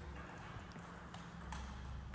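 A few faint clicks of a table tennis ball being hit back and forth in a rally, off bats and the table.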